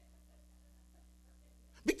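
Near silence: room tone with a faint steady low hum, then a man's voice starts just before the end.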